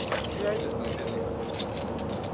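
Hooked catfish splashing and thrashing at the water's surface as it is reeled up to the boat and lifted out, a run of short sharp splashes and drips.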